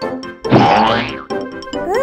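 Children's cartoon background music with a steady beat, with a loud cartoon sound effect about half a second in and a rising sliding tone near the end.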